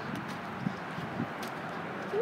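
Soft footsteps and rustling on dry grass, with a few faint light knocks.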